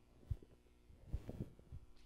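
A few faint, low thumps of handling noise on a handheld microphone as it is shifted in the hand, with a soft rustle about a second in.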